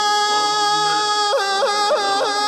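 A solo voice singing an Islamic devotional chant, holding one long note and then breaking into a quick run of four ornamental turns near the end.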